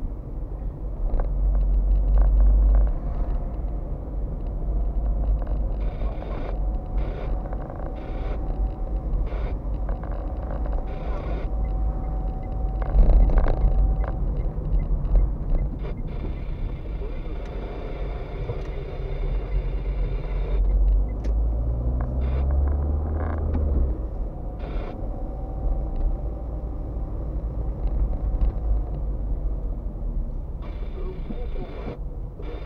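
Car driving slowly, heard from inside the cabin: a steady low engine and road rumble with scattered knocks and rattles, and the engine note rising briefly a little past the middle.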